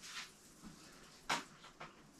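A quiet room with one short, light knock about a second in and a fainter tick near the end: the artificial Christmas tree's stem pole being fitted into its stand.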